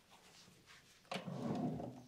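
A scraping, rustling handling noise of objects being picked up and moved, starting sharply about a second in and lasting most of a second.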